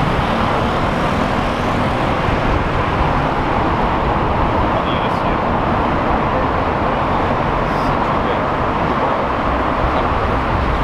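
Steady traffic noise from cars passing on a busy multi-lane road close by: a constant wash of tyre and engine sound at an even level.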